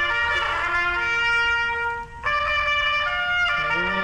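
A trumpet being blown in long held notes, with a short break about two seconds in, a new note after it, and another change in pitch near the end.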